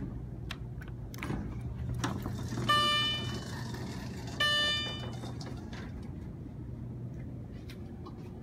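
Epco incline elevator hall-lantern chime ringing twice, two bright bell-like tones about a second and a half apart, each fading quickly. The double stroke marks a car arriving to travel down. A few faint clicks come before the chime over a steady low hum.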